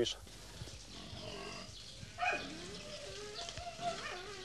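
Faint, distant farm-animal calls: a wavering cry, then from about halfway a louder drawn-out call that slides down in pitch and holds, over a low steady hum.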